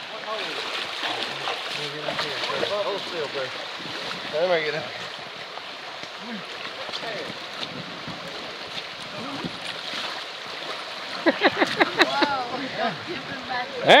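Shallow river water running over rocks in a steady rush, with splashing as an inflatable kayak is pushed through the shallows.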